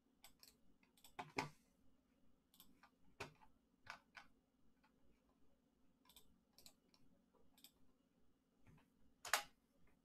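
Faint, irregular clicks of a computer mouse and keyboard, about fifteen in all, the loudest about a second and a half in and again near the end.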